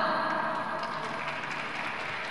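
Ice-arena ambience: an even noisy hum of the big hall, slowly getting quieter after a public-address announcement ends.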